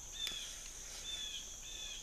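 Woodland ambience: insects droning steadily at a high pitch, with a few faint, short, high chirps.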